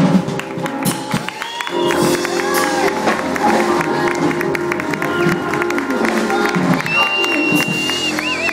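Audience applauding and cheering as the jazz band's last notes ring out. Near the end a long, steady, high whistle is held.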